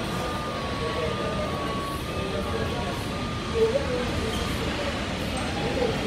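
Steady rumbling noise of a Boeing 787 Dreamliner's jet engines, with indistinct voices talking over it.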